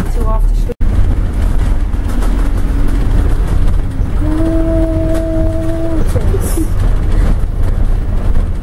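Steady low engine and road rumble inside a moving bus, loud on the microphone. It is broken by a momentary drop-out just under a second in, and about four seconds in a steady held tone sounds for about two seconds.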